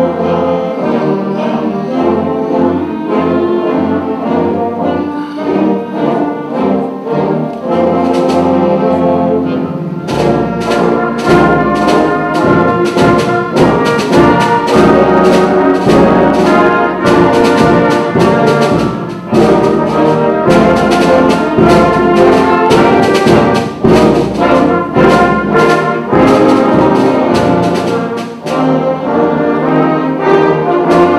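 Middle school concert band playing a march, with brass and woodwinds. About ten seconds in, the full band comes in louder, with a steady beat of sharp strokes.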